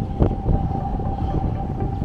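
Wind buffeting the microphone in a dense low rumble, with a steady thin tone held through it.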